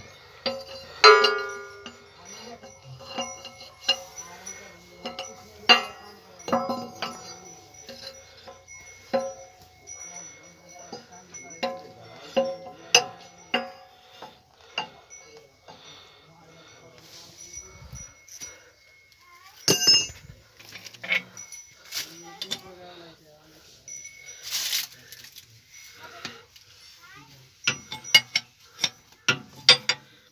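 Irregular sharp metallic clinks and knocks of a steel wrench working on a bolt of a soil compactor roller's frame.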